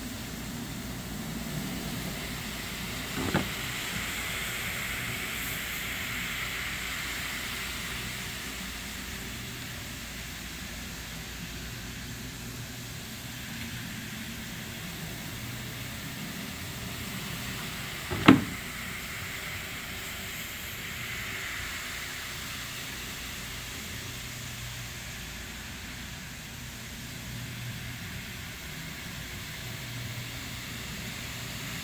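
Single-disc rotary floor machine running steadily as its brush scrubs shampoo into a wet area rug: a low motor hum under a wet swishing hiss. Two sharp knocks cut through, one about three seconds in and a louder one about eighteen seconds in.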